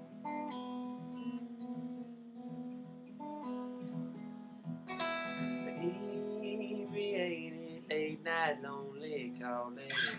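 Steel-string acoustic guitar strummed in a slow folk chord pattern, with a singing voice coming in over the second half and a sung line starting near the end.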